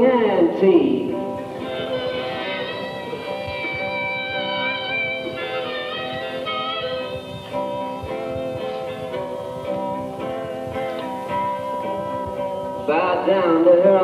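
Live instrumental break on harmonica and strummed acoustic guitar, heard on a rough audience tape. The harmonica holds long steady notes over the guitar, then gets louder with wavering, bending notes near the end.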